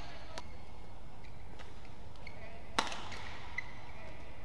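Badminton racket striking a shuttlecock with a sharp crack about three quarters of the way in, followed by a softer hit, with short shoe squeaks on the court floor over steady arena background noise.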